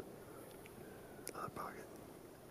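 A person whispering briefly, two short breathy syllables about a second and a half in, over a faint steady background hiss.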